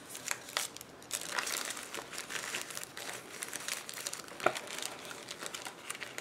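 Paper and plastic wrappers of individually wrapped bandages and small packets crinkling and rustling as they are handled and pushed into a small zippered fabric pouch, with many small clicks and one sharper tap about four and a half seconds in.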